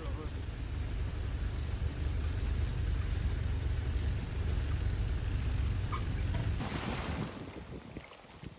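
Low rumble and road noise in the cabin of a moving van, with wind buffeting the microphone; the sound changes and drops away near the end.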